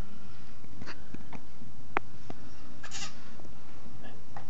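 Nine-week-old American bully puppy giving a few short, high yaps while playing. There is a sharp click about halfway through.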